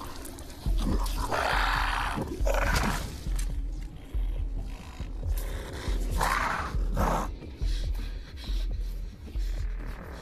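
Horror-film soundtrack: a monstrous creature's growls, loud at about one to three seconds in and again around six to seven seconds, over a dark score with a low thud about every two-thirds of a second.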